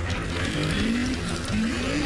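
Cartoon mechanical sound effect of a lever being pushed up a machine's gauge: a ratcheting, gear-like noise, with a tone that rises twice.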